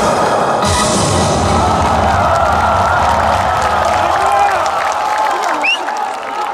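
The end of an upbeat trot song's backing track, a final note held under a crowd cheering and clapping; a short rising whoop near the end.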